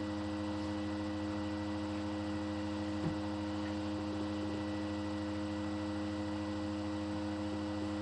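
A steady hum holding several fixed pitches, with one faint knock about three seconds in.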